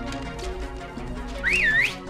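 Background music, then near the end a loud two-finger whistle: one blast that rises in pitch, dips and rises again.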